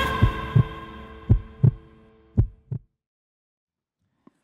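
Heartbeat sound effect of an intro sting: three lub-dub pairs of low thumps about a second apart, the last one fainter, over a music chord that fades out.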